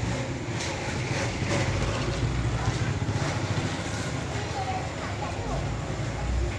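Scattered voices of people and children in the background over a steady low rumble.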